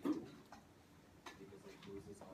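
A faint, distant voice, likely a student answering, with a few light ticks.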